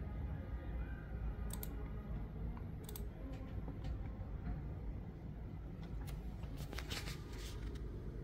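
A handful of sharp, separate clicks over a steady low hum, with a quicker run of clicks and rustle near the end.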